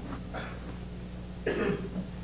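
A single short cough about one and a half seconds in, over a low steady hum in an otherwise quiet pause.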